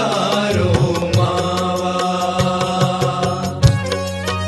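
Instrumental passage of a Gujarati devotional kirtan (bhajan): held melody notes over a bass line with steady percussion strikes.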